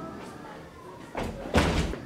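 A door slams shut with one loud bang about one and a half seconds in.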